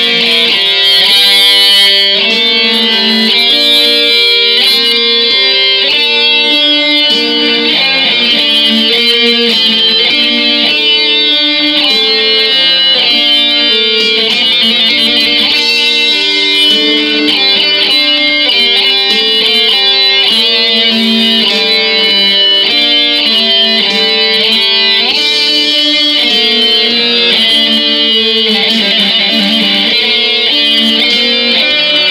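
Electric guitar music: a melodic line of quickly changing picked notes over sustained chords, loud and steady throughout.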